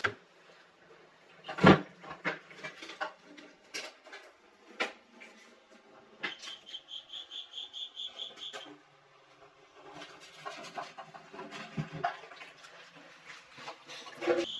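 Handling noises as a BMW K75 motorcycle's fuel tank is worked free of its rubber grommet mounts and lifted off: scattered clicks and knocks, a thump about two seconds in, and a quick regular run of rubbing sounds, about four a second, in the middle.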